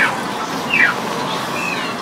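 A few short calls from a small animal, each falling quickly in pitch: a clear one at the start, a louder one just under a second in, and fainter ones after. A steady background hiss runs under them.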